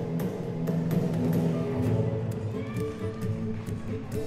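Gymnastics floor exercise music playing, with sustained low notes and sharp percussive hits.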